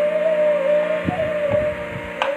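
Bamboo flute (bansuri) holding one long, slightly wavering note over a steady harmonium drone, with two low drum strokes about a second in and again half a second later.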